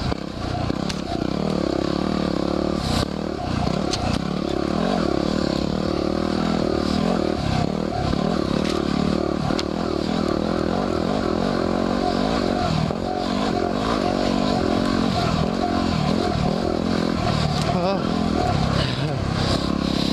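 2010 Yamaha WR250R's single-cylinder four-stroke engine running under load, the revs rising and falling with the throttle, with occasional knocks and rattles from the bike on the dirt trail.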